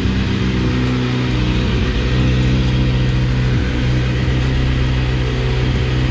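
Kawasaki Z900's inline-four engine idling steadily.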